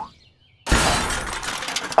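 Cartoon crash sound effect: after a brief hush, a sudden loud smash about two-thirds of a second in, breaking into a rattle of small crackling strikes that trails off over about a second, like glass shattering.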